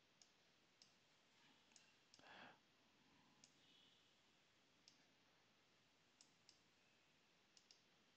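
Faint computer mouse clicks, about ten single clicks spaced irregularly, with a brief soft rustle about two seconds in.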